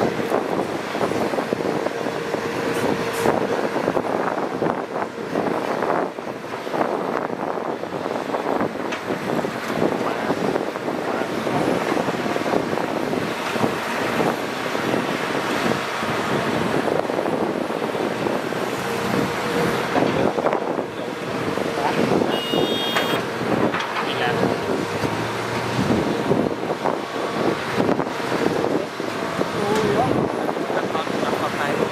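Diesel engines of Hitachi Zaxis 200 hydraulic excavators and dump trucks running steadily under load while the excavators load the trucks, with a continuous clatter of soil and rock dropping into the steel truck beds.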